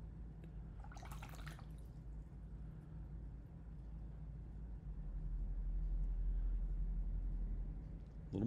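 A brief swish of water about a second in, like a trickle or drip, over a low steady hum that grows louder about five seconds in.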